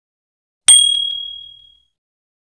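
Notification-bell sound effect: one bright, high ding that rings out and fades over about a second.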